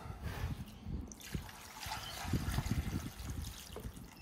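Stock poured from a saucepan into a roasting pan, a steady trickle of liquid splashing into the pan around the meat, growing fuller from about a second in.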